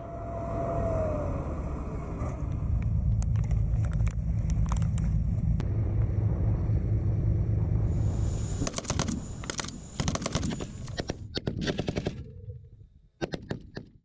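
An armoured vehicle's engine runs with a steady low rumble as it drives. About nine seconds in, machine guns open up in rapid bursts, with a brief lull and a few more shots near the end.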